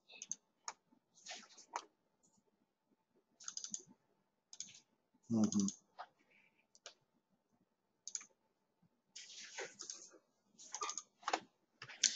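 Faint, irregular clicking and tapping of a computer keyboard and mouse in short scattered clusters, with a brief murmured "uh-huh" about five seconds in.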